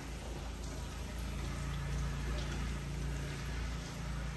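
Water poured from a plastic scoop over a man's head, running through his hair and splashing into a shampoo basin as a hair treatment is rinsed out. The flow runs steadily and grows a little louder partway through.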